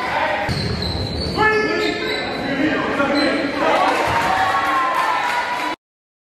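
Basketball bouncing on a hardwood gym floor amid voices of players and spectators. The sound cuts off abruptly near the end.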